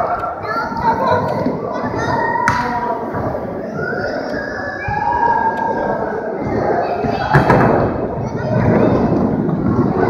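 Skateboard wheels rolling over a plywood mini ramp, with thuds from the board. There is a sharp knock about two and a half seconds in and a louder one about seven seconds in.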